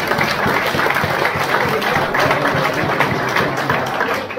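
Audience applauding, a steady dense clapping that follows a line in a rally speech.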